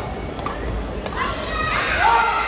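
Badminton racquets striking a shuttlecock in a rally: sharp clicks near the start, about half a second in and about a second in. Voices then shout in the hall from about a second in, loudest near the end.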